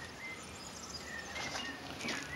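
Faint background noise with a few short, high chirps scattered through it.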